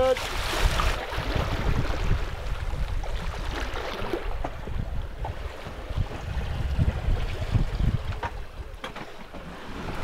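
Wind buffeting the microphone over the rush of water along the hull of a sailing catamaran under way, in uneven gusts that ease near the end.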